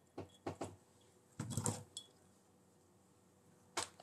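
Copper wire clinking faintly against a small glass jar as it is lifted out of the patina solution: a few light clicks, a short louder clatter about a second and a half in, and one last click near the end.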